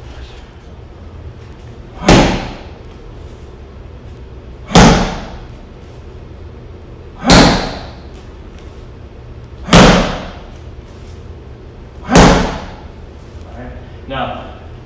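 Five hard punches landing on a hand-held padded impact pad, one about every two and a half seconds, each a sharp smack with a short echo off the room.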